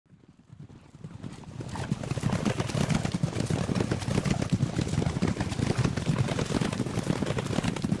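Horses galloping, a fast, dense drumming of hoofbeats that swells in over the first two seconds and then runs on steadily.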